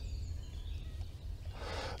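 Quiet outdoor ambience with a steady low rumble, and a man drawing breath near the end.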